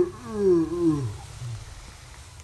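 A person's deep laugh in three pulses, falling in pitch and over in about the first second and a half.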